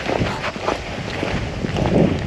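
Wind rumbling on the microphone during a walk, with faint footsteps on a paved street.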